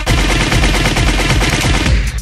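A loud, rapid machine-gun-fire sound effect dropped into a Baltimore club DJ mix, a dense run of shots in place of the beat, used as a transition into the next track.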